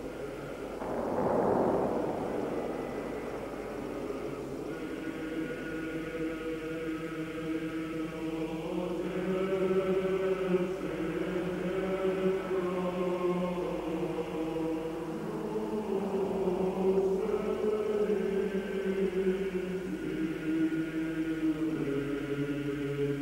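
Choir chanting slowly in long held chords, with phrases breaking off and starting again every few seconds.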